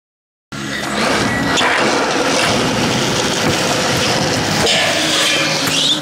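Stunt scooter wheels rolling on a concrete skatepark surface, a loud steady rolling noise with a few sharp knocks, starting after half a second of silence. A rising sound comes near the end.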